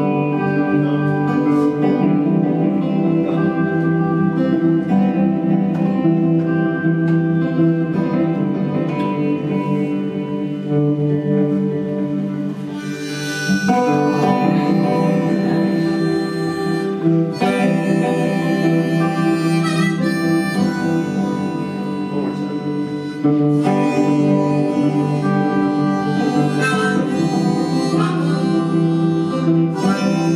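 Harmonica playing a lead solo over two strummed guitars, in an instrumental break of a folk-roots song.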